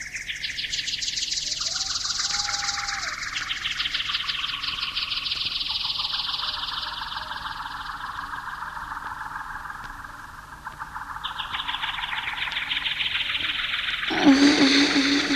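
Beatless electronic music in a DJ mix: a fast, buzzing, chirping trill high in the range that steps down in pitch several times and jumps back up near the end, with no drum beat under it.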